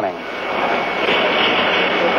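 Steady hiss of an open radio or broadcast audio channel between countdown calls, with a faint steady high tone in the second half.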